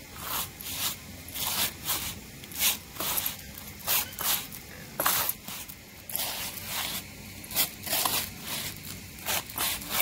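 A hand raking and rubbing coarse dry yellow grits across a woven bamboo tray, the grains scraping and rustling against the bamboo weave in short, repeated strokes about two a second.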